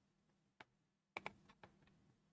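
Near-quiet room with a few faint computer clicks: one about half a second in, a quick run of clicks just past one second, and another shortly after.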